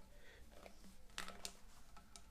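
Faint clicking and rubbing of plastic washbasin trap parts being handled and turned together in the hands, with a couple of sharper clicks a little past halfway.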